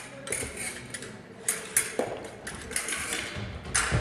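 Fencing blades clicking and clashing against each other, mixed with the thuds of feet stamping and lunging on the piste. The strikes come in quick irregular runs, with a heavier knock about two seconds in and another near the end.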